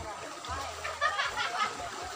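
Faint chatter of several people talking at a distance, with light splashing of water as people wade in a muddy pond catching fish by hand.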